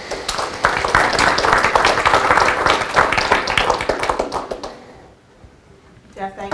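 An audience clapping: many hands applauding together, dying away about five seconds in.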